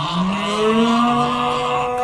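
A man's long drawn-out yell, rising in pitch at the start and then held on one steady note.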